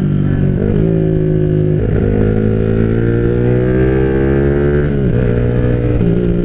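Bored-up Yamaha Jupiter MX single-cylinder four-stroke motorcycle engine (177 cc) under way at speed. Its pitch climbs steadily for about four seconds, then drops sharply about five seconds in and holds steady.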